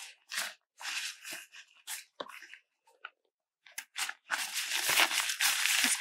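Nylon backpack fabric rustling and crinkling as hands open the top compartment and rummage inside, in irregular bursts, then a short lull. Near the end comes a longer, denser spell of crinkling as a plastic hydration reservoir is handled and lifted out.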